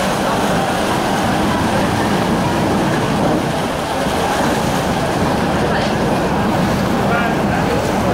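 Thames Clipper catamaran's engines running and its hull churning the water as it manoeuvres alongside the pier: a steady, loud rumble and wash.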